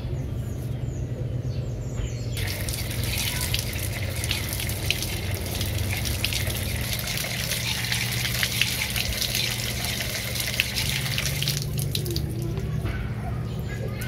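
A stream of running water pours and splashes onto mushroom pieces in a plastic basket to rinse them. It starts about two seconds in and stops a couple of seconds before the end, over a steady low hum.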